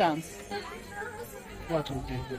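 Only speech: the tail of a spoken word at the start, low background chatter, and another short word near the end.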